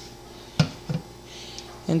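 Two short light knocks of a metal spoon on dishware about half a second apart, then a faint scrape, as thick soft-serve banana ice cream is scooped out of the blender cup into a bowl.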